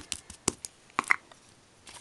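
Wood-mounted rubber stamp being tapped and pressed down by hand: a handful of light, sharp taps in the first second or so.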